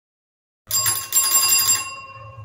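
After a brief silence, a bright bell-like jingle sounds for about a second, several ringing tones over a shimmer, and its ring fades out. It is an editing sound effect marking a time-skip card.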